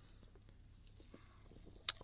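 A very quiet room with a few faint small ticks, and one short sharp click just before the end.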